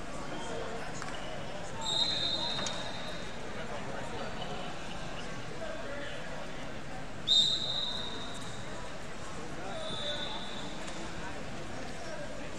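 Murmur of voices in a large gym hall, with three short high whistle blasts from referees on other wrestling mats. The blasts come about two, seven and ten seconds in, and the middle one is the loudest.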